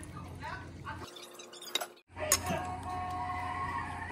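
Faint talking, then a brief dropout about halfway, after which background music with held notes comes in, led by a sharp click.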